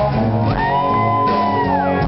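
A live rock band playing, with a strummed acoustic guitar and drums. About half a second in, a long high held note rises, holds, then slides down near the end.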